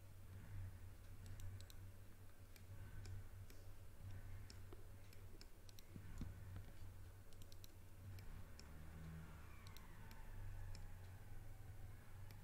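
Faint computer mouse and keyboard clicks, scattered irregularly and sometimes in quick clusters, over a low steady hum.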